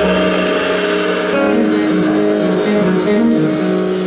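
A jazz band playing live, a steady run of instrumental notes with a guitar prominent.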